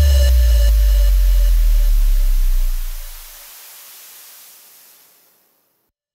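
The closing deep bass boom of an electronic dance remix rings on and fades out within about three and a half seconds, under a fading hiss-like wash and a faint held tone. The track ends in silence a little after five seconds in.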